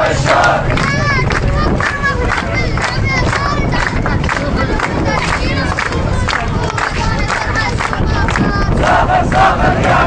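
Crowd of protesters shouting slogans together, many men's voices loud and overlapping without a break.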